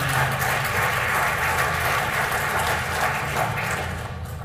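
Audience applauding: a dense patter of many hands clapping that dies away near the end.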